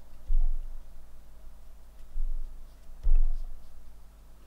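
Three dull, low thumps at uneven intervals against faint steady room hum, from handling at the painting desk as a brush works over watercolour paper.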